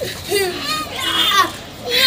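A small child's high-pitched voice in short wordless cries during play.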